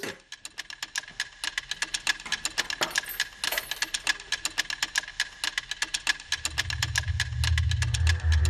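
Suspense background score built on rapid, even ticking, about six or seven clicks a second, over a faint steady high tone. A low drone swells in near the end.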